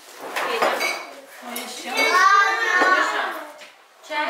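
Tableware being handled: glasses, spoons and ceramic bowls clinking in the first second, then a voice for about a second after the middle.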